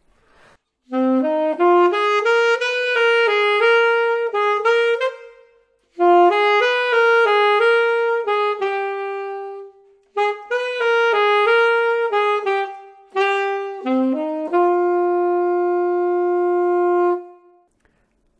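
Alto saxophone playing a blues melody in 6/8 in four phrases, the last one ending on a long held note.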